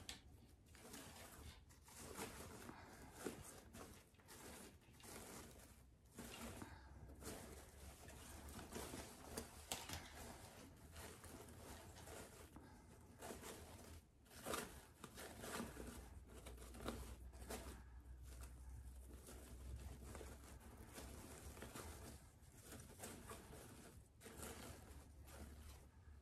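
Faint, irregular rustling and crinkling of ribbon as hands fluff and adjust the loops of a bow.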